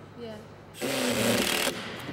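Cordless drill running under load into wood for about a second, starting a little under a second in and then cutting off.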